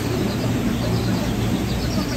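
Water rushing and churning through the channel of a river-rapids raft ride, a steady noise with a low hum beneath it.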